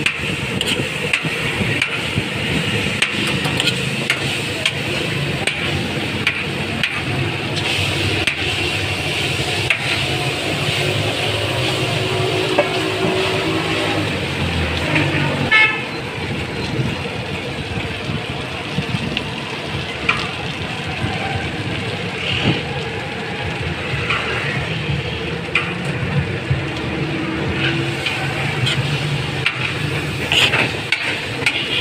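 Busy roadside ambience of traffic with car horns, over the scrape and tap of a metal scoop on a flat steel tawa griddle of frying chicken.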